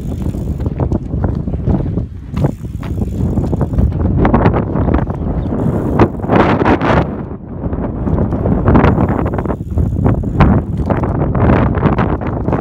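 Gusty wind rumbling on the microphone, with a road bicycle riding slalom around cones close by on asphalt. The loudest stretch comes about six seconds in, as the bike passes nearest.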